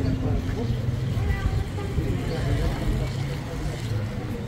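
People talking nearby, no single voice clear, over a steady low rumble.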